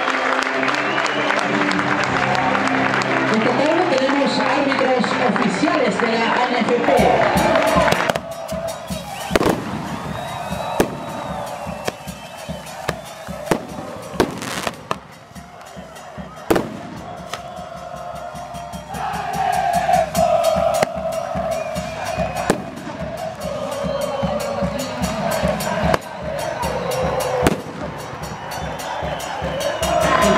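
Stadium crowd at a football match welcoming the teams onto the pitch: loud music, then from about eight seconds in, scattered sharp bangs of firecrackers over crowd voices.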